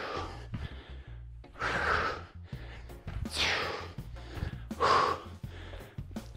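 Hard, heavy breathing from a man doing lunge jumps, one forceful breath about every second and a half, the sign of a hard effort late in a plyometric set. Background music runs underneath.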